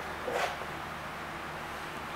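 Quiet room tone: a steady low hum under a faint hiss, with one brief soft noise about half a second in.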